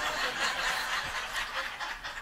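Congregation laughing softly, a diffuse mix of many chuckles, in response to a joke.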